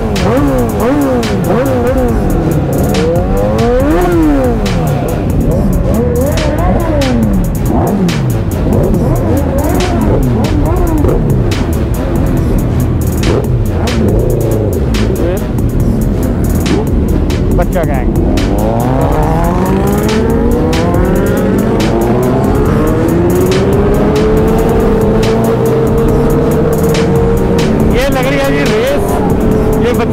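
Several sport motorcycle engines revving up and down in quick overlapping blips. About two-thirds of the way in, the engine pitch climbs steadily and then levels off as the bikes pull away and accelerate.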